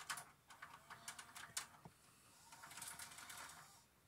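Faint clicks and taps, then a short soft rattle from about two and a half seconds in: handling noise.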